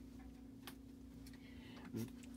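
Quiet room with a steady low hum and a few faint clicks: one about a second in and two more near the end.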